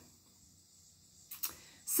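A short pause in speech: quiet small-room tone, then two soft clicks close together about a second and a half in.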